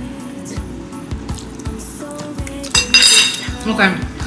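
Background music with a steady beat; about three seconds in, a metal fork clinks against a ceramic plate and rings briefly.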